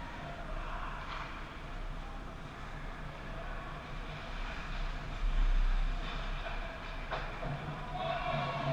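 Ice hockey game in an arena: skates scraping on the ice and occasional sharp scrapes or clacks from play, over the rink's steady low hum. A brief louder low rumble comes about five seconds in.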